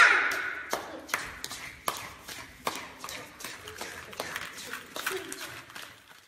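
Irregular sharp claps and taps, a dozen or so at uneven spacing, with quiet voices among them, getting quieter toward the end.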